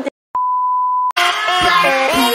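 Steady beep of a TV colour-bar test tone: a single unchanging pitch that lasts under a second and stops abruptly. A pop song with a woman singing cuts in right after it.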